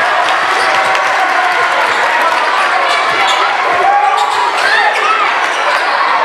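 A basketball dribbled on a hardwood gym floor, with short sneaker squeaks, over a steady din of crowd voices.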